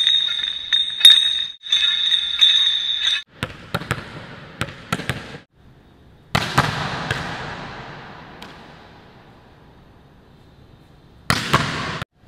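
A volleyball struck hard in a large, echoing gym: a sharp smack about six seconds in whose echo dies away over several seconds, another near the end, and scattered lighter knocks before. It opens with two bursts of a bright ringing high tone.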